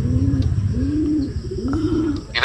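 Racing pigeon cooing: three rising-and-falling coos, each about half a second long, over a steady low rumble.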